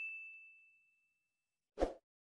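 Notification-bell 'ding' sound effect of a subscribe animation: one clear bell tone fading away over about a second and a half. A short whoosh follows near the end.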